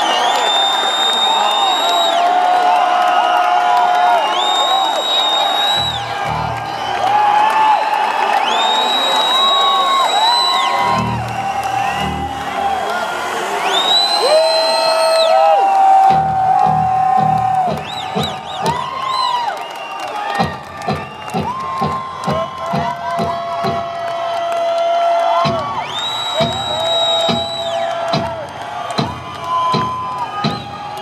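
Live rock band starting up in an arena over a cheering, whooping crowd: long held notes, with low drum hits coming in about six seconds in and a steady drum beat from about halfway.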